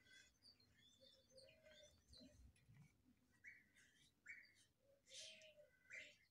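Near silence with faint bird chirps: short, scattered high notes.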